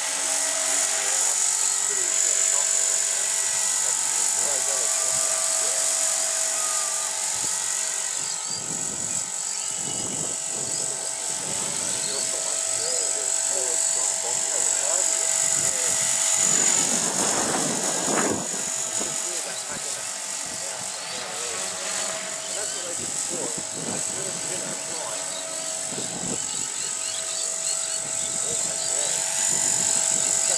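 Align T-Rex 450 electric RC helicopter in flight, a steady high-pitched whine from its motor and rotors that swells and eases as it manoeuvres. It comes down low over the grass and sets down near the end.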